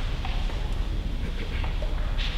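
Low steady rumble of microphone noise with a few faint clicks and rustles, as a choir stands silent and ready to sing.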